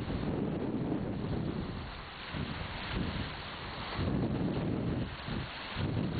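Strong, gusty wind rushing over the microphone, a steady noise that dips briefly about two and five seconds in.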